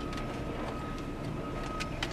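Low steady background hum with a thin, faint high whine, and a few faint clicks of the radio's antenna cable being handled.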